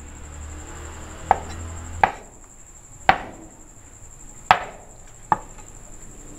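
Cleaver chopping squid balls on a wooden cutting board: five separate knocks of the blade striking the board, roughly a second apart and unevenly spaced.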